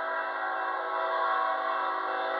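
Air horn of BNSF ET44C4 locomotive 3966 sounding one long, steady blast, a chord of several tones, as the train approaches the crossing.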